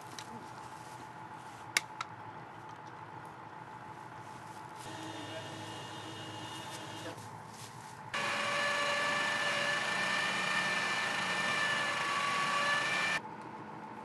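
Machinery of a tracked MLRS rocket launcher running with a steady whine of several held tones, starting abruptly about eight seconds in and cutting off about five seconds later. Before it comes a fainter whine and, near the start, a sharp click.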